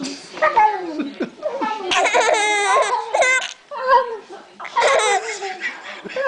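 Baby squealing and giggling: a run of high-pitched cries that mostly fall in pitch, with a long warbling squeal about two seconds in.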